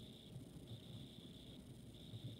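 Faint pencil scratching on paper as words are handwritten, in a couple of stretches with a short pause between.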